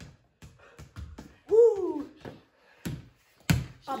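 A basketball bouncing on a concrete floor, with footsteps, making a string of irregular thumps; the loudest comes near the end. A short voiced "ooh" that rises and falls comes about a second and a half in.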